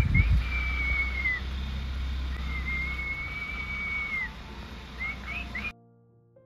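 Two long, steady high whistled notes, each held one to two seconds, over a low steady rumble, then a few short chirps. Near the end the sound cuts off abruptly to faint piano music.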